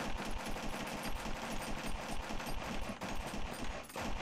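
Semi-automatic pistol fired rapidly, shot after shot without a pause, emptying the magazine; film-soundtrack gunfire that stops suddenly at the end.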